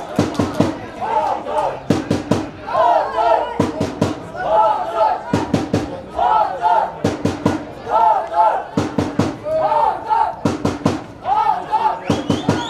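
Football supporters chanting a repeated rhythmic chant, backed by a drum beaten in short groups of strikes about every second and a half.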